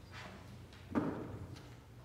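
A quiet, waiting pause over a steady low hum, with one soft thump about a second in.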